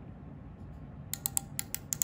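Ratchet stop on a depth micrometer's thimble clicking about six times in quick succession in the second half: the ratchet slipping as the measuring rod seats against the reference at constant measuring force.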